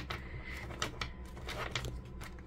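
A deck of tarot cards being handled and shuffled by hand: soft sliding of card against card with a few faint clicks.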